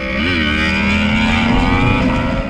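Suzuki Hayabusa's inline-four engine accelerating hard, its pitch climbing steadily after a brief rise and dip near the start.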